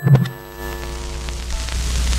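A deep low impact hit, then held music notes that fade while a hissing swell with a low rumble builds up: a transition sound effect between sections of the narration.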